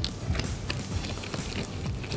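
Gloved hands rolling and patting a soft, sticky ball of crushed-biscuit and condensed-milk dough, giving soft irregular rubbing and small taps.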